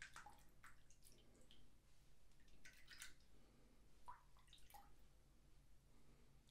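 Near silence, with a few faint, irregular short scrapes and wet clicks from a metal safety razor stroking across a lathered scalp.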